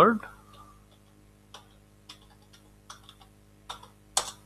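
Keystrokes on a computer keyboard as a password is typed: about eight separate, unevenly spaced key clicks over the second half.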